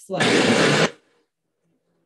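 Cuisinart countertop blender starting up on hot soup, a loud whirring run lasting under a second that cuts off suddenly.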